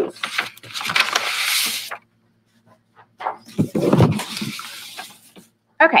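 A sheet of brown kraft paper used as a paint palette being crumpled and folded as it is moved: two bouts of paper rustling with a short quiet gap between.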